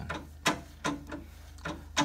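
A few sharp, irregular clicks and knocks from an 1877 Singer Model 12 fiddle-base treadle sewing machine's mechanism, the loudest about half a second in.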